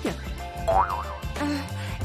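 Light background music with a comic cartoon sound effect: a quick falling swoop at the very start, then a wobbly boing about a second in.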